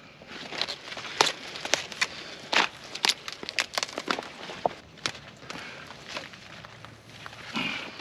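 Broccoli being cut by hand: a knife slicing through the thick stems and the big leaves rustling and snapping as they are stripped, a quick irregular series of sharp cracks that thins out over the last few seconds.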